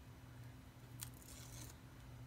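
Faint peel of the paper liner off double-sided score tape on cardstock: a small click about a second in, then a soft, brief rustle, over a low steady hum.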